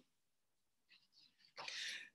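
Near silence with a few faint mouth clicks, then a short, sharp in-breath by the speaker about one and a half seconds in.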